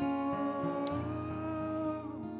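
Soprano saxophone holding one long note that bends slightly upward about a second in and stops near the end, over a strummed guitar.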